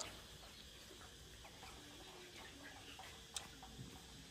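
Near silence: faint background ambience with a single faint click about three and a half seconds in.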